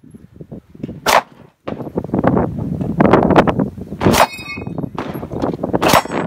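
Three pistol shots, the first about a second in and the last near the end, with hit steel targets ringing after the second and third. Between the shots there is a loud, irregular rushing noise.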